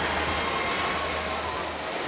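Superstar fairground ride running at speed: a steady rushing noise from the spinning arms and machinery, with a low hum underneath.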